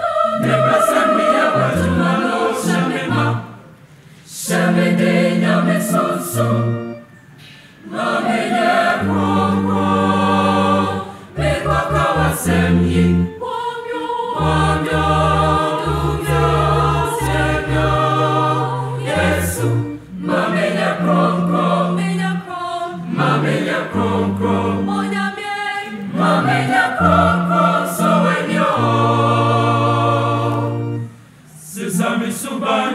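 Mixed school choir of boys and girls singing a choral piece in several parts at once, in sung phrases broken by short pauses.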